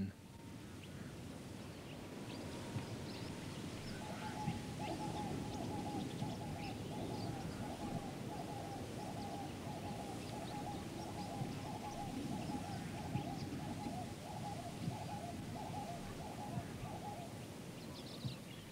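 An animal call pulsing rapidly and steadily at one pitch starts about four seconds in and stops near the end. Beneath it is a low, rumbling background with scattered faint high chirps.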